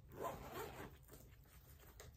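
Zipper of a fabric makeup pouch being pulled open: one brief, faint zip lasting under a second.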